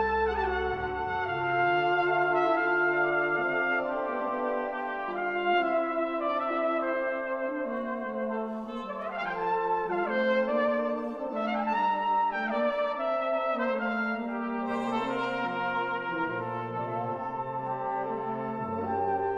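A full brass band of cornets, horns, trombones, euphoniums and tubas playing sustained chords. Two swooping glides rise and fall in the upper parts midway, and low bass notes come back in near the end.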